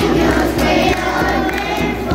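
Group singing with children's voices among them, kept to a regular beat struck on a hand-held tambourine.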